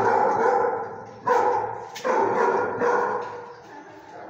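A dog giving a run of drawn-out barks, each up to about a second long, trailing off near the end.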